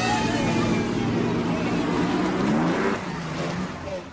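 Vintage racing car's engine running as the car comes down the road, its note climbing as it accelerates and then dropping away suddenly about three seconds in.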